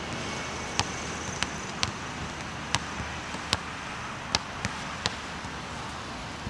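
A basketball being dribbled on an outdoor hard court: about eight sharp bounces at an uneven, unhurried pace, over a steady background hiss.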